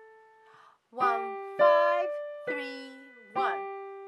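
Piano notes played slowly one at a time, four in all, each left to ring, as the right-hand melody is picked out. A woman's voice speaks briefly with each note, counting the finger numbers.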